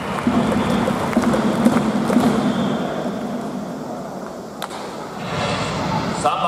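Ballpark crowd applauding during a starting-lineup introduction, with music from the stadium PA underneath.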